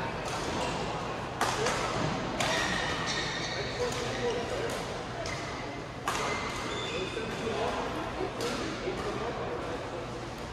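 Badminton hall ambience: a steady murmur of crowd chatter, broken by a few sharp hits from play on neighbouring courts. Some of the hits are followed by a short, high squeal.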